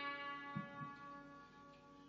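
Sitar strings ringing on and fading away after the last note, with two soft low knocks a little over half a second in.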